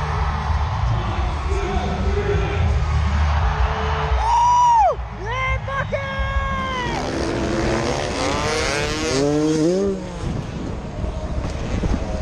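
Stadium sound at a freestyle motocross show: a voice over a steady low rumble, then motocross bike engines revving in rising sweeps in the second half.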